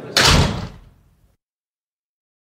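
A door slamming shut once, just after the start, the sound fading out within about a second.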